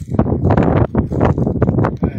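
Wind buffeting the phone's microphone in a heavy, uneven rumble, with footsteps on stony ground.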